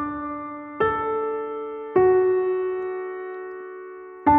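Solo piano lullaby: soft chords struck about a second apart, the one about halfway through left to ring and slowly fade.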